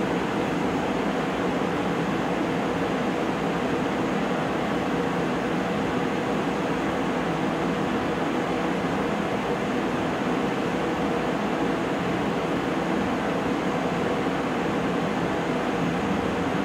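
Steady, even whir of a CO2 laser engraver at work, with its fume-extraction fan and air assist running as it finishes engraving a tumbler on a rotary.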